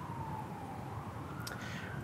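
Faint siren wailing, its pitch sliding slowly down and then back up once, over quiet street background.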